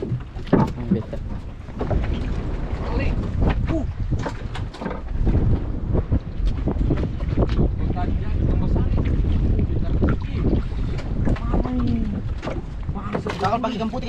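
Wind buffeting the microphone over water moving around a small wooden boat, with scattered knocks and clicks of handling on the boat's deck.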